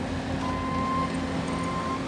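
Construction machinery engine running steadily, with a reversing alarm beeping twice, each beep about half a second long.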